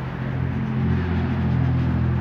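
A vehicle engine running: a steady low hum that grows louder about half a second in.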